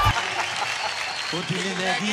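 Studio audience applauding, then a man's voice starts up about one and a half seconds in.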